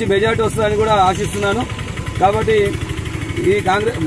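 A man speaking Telugu close to the microphone, in phrases with short pauses, over the steady low rumble of an engine running in the background.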